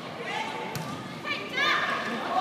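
Volleyball struck during a rally in a large hall: a sharp smack about three quarters of a second in, then high voices shouting near the end.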